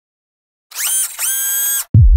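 Logo sound effect: a high whirring whine that rises, breaks briefly, then holds steady for about half a second, followed near the end by a short, loud deep bass hit.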